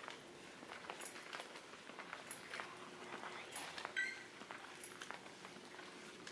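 Faint footsteps on a hard, polished store floor, heard as scattered light irregular clicks over a low steady hum, with one brief high-pitched tone about four seconds in.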